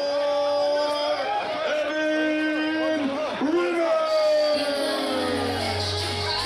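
A ring announcer's voice over the PA, drawing out a wrestler's introduction in long held syllables, the last one sliding down in pitch. About five seconds in, the bass of the entrance music starts.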